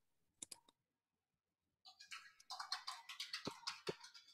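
Faint typing on a computer keyboard: a few keystrokes about half a second in, then a quick, steady run of keystrokes from about two seconds in.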